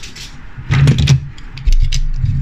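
Metal diecast toy cars clicking and knocking against each other as one is picked out of a pile and handled, with a cluster of louder knocks about a second in.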